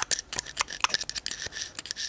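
Steel spike scraping and clicking against the metal clamp jaw of a Mul-T-Lock key cutting machine, in quick irregular ticks and short scrapes. It is picking out brass cutting crumbs, which would stop the machine from cutting an accurate key.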